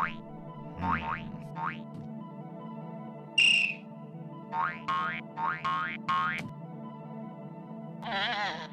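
Cartoon sound effects: a series of short rising, springy boings, in a quick run about five to six seconds in, and a louder brief squeak about three and a half seconds in. They play over a soft, steady background score.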